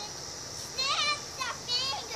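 A young child's voice: two short, high-pitched squeals or calls, the first just under a second in and the second near the end, with the pitch sliding up and down.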